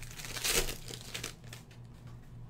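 Foil trading-card pack wrapper crinkling as it is handled, loudest about half a second in and trailing off after the first second.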